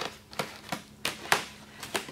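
Plastic wrapping and foam packing pieces being handled in a foam shipping box: about half a dozen sharp crackles and taps, irregularly spaced.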